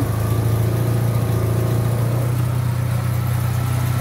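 Chevrolet Monza's four-cylinder engine idling steadily, running again after the distributor's broken pickup-coil connection was repaired.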